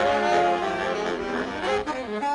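Saxophone quintet, baritone and tenor saxophones among them, playing jazz together in held chords, with a moving line near the end.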